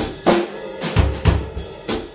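Acoustic drum kit played in a steady beat: bass drum and snare drum hits, each ringing briefly.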